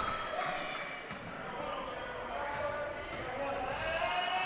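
Gymnasium ambience at the free-throw line: faint, echoing background voices, with a few basketball bounces on the hardwood floor as the shooter readies his next shot.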